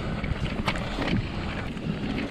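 Mountain bike rolling fast down a dirt forest singletrack: tyres on loose dirt and wind on the camera microphone make a steady rumbling noise, broken by a few sharp rattling clicks from the bike over bumps.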